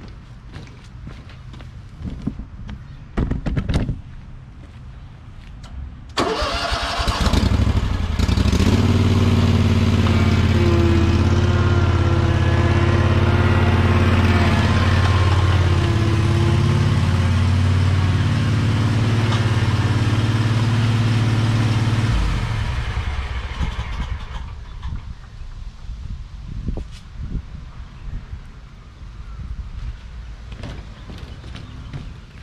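Stand-on zero-turn mower's engine starting about six seconds in, then running steadily for about fourteen seconds while the mower is driven up the ramp into an enclosed trailer. It shuts off near the end, the sound dying away over a couple of seconds.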